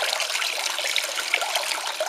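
Water pouring steadily from a plastic container through the teeth of a comb and splashing into a plastic tub below.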